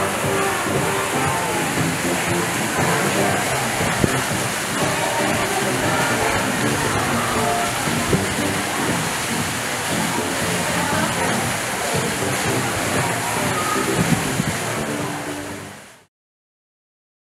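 Steady rush of running water, like a fountain, with indistinct voices and music mixed in, fading out near the end.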